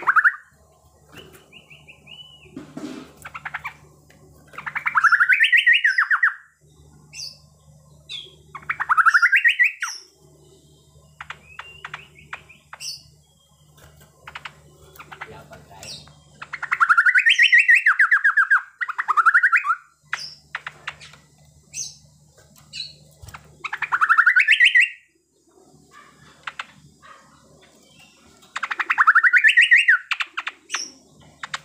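A caged cucak pantai (kalkoti) is singing in loud, rapidly rattling phrases that rise and then fall, each lasting one to two seconds and coming every few seconds, the machine-gun-like song its keepers prize. Shorter, thinner calls fall between the phrases.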